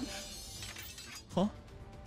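A bright, crashing sound effect from the anime soundtrack, like glass shattering, fading out over about a second over background music; a man says "Huh?" near the end.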